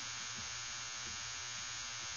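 Steady background hiss with a faint low hum and no distinct handling sounds.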